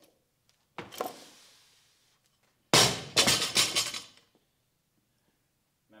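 A barbell with bumper plates is cleaned: a sharp clatter and stomp as it is caught, about a second in, ringing off briefly. About three seconds in it is dropped to the floor, landing with a loud crash and bouncing several times for over a second, the plates rattling on the sleeves.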